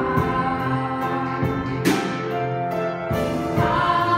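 A girl singing solo into a microphone, with a small choir singing along behind her in held notes.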